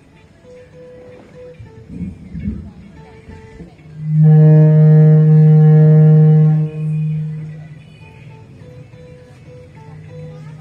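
Guitar heard through a PA: a few quiet held notes, then about four seconds in a loud, steady low tone held for about two and a half seconds, fading out in a shorter, softer stretch.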